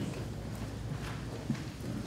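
Footsteps on a hard floor: a few separate steps over a low room hum.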